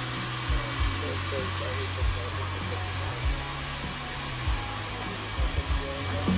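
Small handheld hair dryer running steadily, blowing a constant airy whoosh over a shirt to dry it. Under it, background music with low bass thumps and a faint singing voice.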